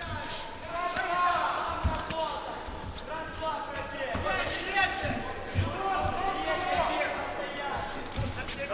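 Dull thuds from two boxers in the ring, gloves landing and feet on the canvas, under the voices of the crowd and cornermen.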